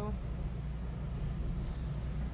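Steady low rumble with no speech: the background noise of a voice recording being played back.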